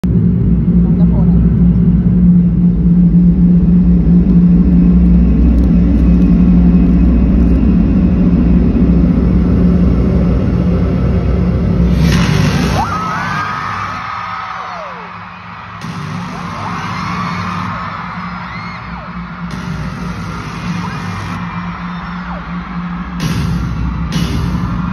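Arena concert sound: a loud, steady low bass drone over the PA for about twelve seconds, then it drops away and a crowd of fans screams and cheers in high, rising and falling voices, with the music kicking in near the end.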